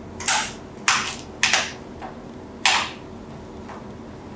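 Pliers clicking against the brass parts of a bullet-shaped lighter's top mechanism as they grip and pry it: four sharp metallic clicks, the last coming after a longer gap.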